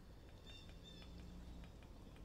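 Two faint, short, high-pitched animal calls about half a second and a second in, over a steady low hum, with a few faint light ticks near the end.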